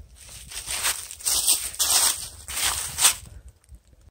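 Footsteps crunching through dry fallen leaves: a run of steps about every half second that fades near the end.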